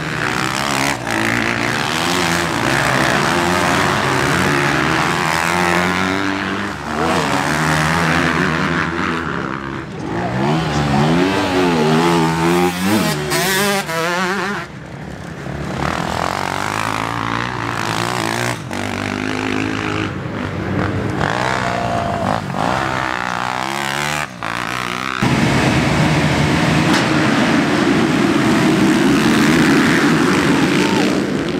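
Motocross bikes riding through a dirt corner one after another, engines revving and shifting, pitch rising and falling as each goes by. Near the end the sound gets louder and denser, a whole pack of bikes running together.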